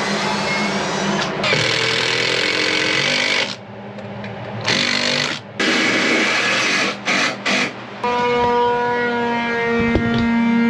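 Power drill running in bursts, stopping and starting several times, as screws go into a wooden support plank. Near the end music with a steady held melody takes over.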